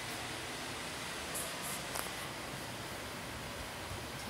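Steady hiss of background noise in a small room, with faint handling rustle and a faint click about halfway through.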